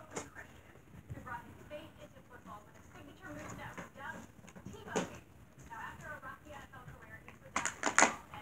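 Faint voices talking in the background, with a sharp knock about five seconds in and a couple more just before the end.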